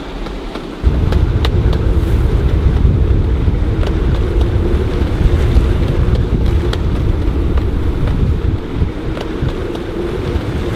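Strong wind of about 30 knots buffeting the microphone on a sailboat's deck: a heavy, loud low rumble that starts suddenly about a second in and keeps up, with the rush of wind over choppy lagoon water and a few faint ticks.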